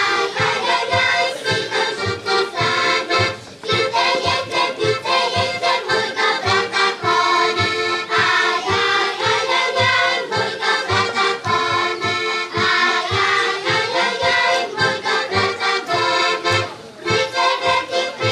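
Diatonic button accordion playing a lively folk tune with a steady bass beat of about three pulses a second, while a children's choir sings along.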